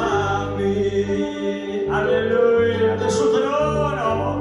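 A man sings a slow worship song into a microphone over the church PA, holding long, wavering notes. A keyboard and low bass notes that change about once a second accompany him.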